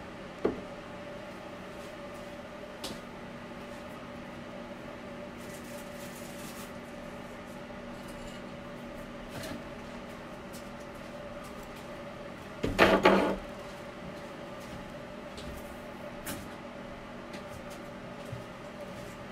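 Steady low hum in a small room, with a few faint knocks and one short, loud clatter about thirteen seconds in, as containers are fetched and handled.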